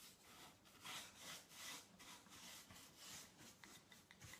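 Faint, repeated scratching of a paintbrush being scrubbed dry onto sanded pine, about two to three brush strokes a second.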